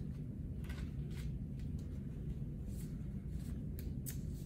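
Soft paper rustles and light scrapes, a few scattered short ones, as a paper archival four-flap envelope is folded and creased around a glass plate negative, over a steady low room hum.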